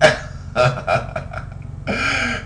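A man's voice making a string of short, broken vocal bursts, about five in two seconds, the first at the very start the loudest.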